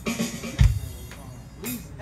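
Ukulele and drum kit playing the close of a rock song. A loud bass drum hit comes about half a second in, with quieter playing around it.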